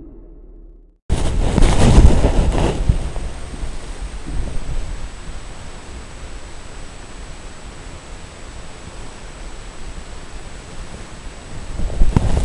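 Fading music cuts off about a second in and is followed by loud wind buffeting and rustling on the microphone. This eases after a couple of seconds into a steady hiss with a thin, high, constant whine.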